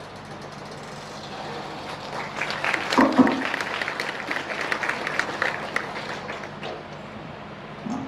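Audience applauding, swelling about two seconds in and dying away near the end.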